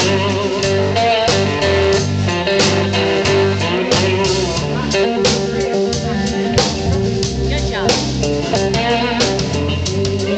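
Live blues band playing loudly: electric guitar over a drum kit, with a low part changing note steadily underneath.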